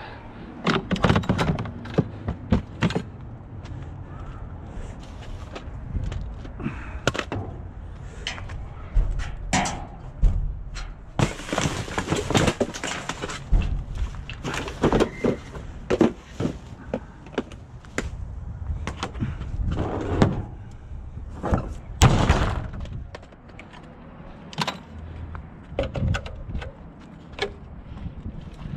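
Irregular knocks, thuds and clatter of things being handled and knocked against a metal dumpster, with a couple of seconds of rustling a little before the middle and one sharp, loud knock about two-thirds of the way through.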